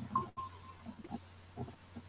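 Faint, scattered short noises over a steady low hum: the incoming audio of a video call that has just connected.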